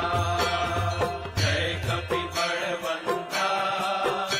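Hindu devotional aarti music: chanted singing over instruments and bells, with a steady low drone underneath that drops out about two and a half seconds in.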